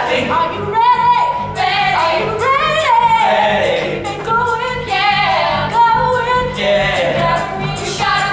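Live musical-theatre song: singers perform over instrumental accompaniment, holding long notes with vibrato.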